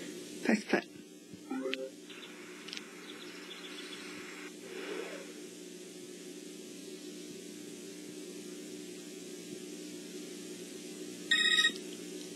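Steady electrical hum with a few brief faint sounds early on, then a short, bright electronic beep near the end.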